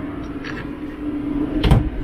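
Bathroom cabinet door swung shut, closing with a single knock about three-quarters of the way through, over a steady low hum.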